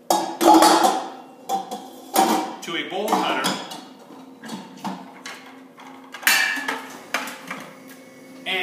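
Stainless steel bowl and fittings of a commercial food processor being assembled onto its base: a series of metallic clanks and knocks as the bowl, pin and lid are seated, with the loudest knocks near the start and about six seconds in.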